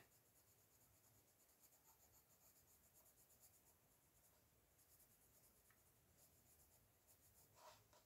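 Very faint, soft scratching of a CastleArts coloured pencil shading on paper, in short uneven strokes, barely above room tone.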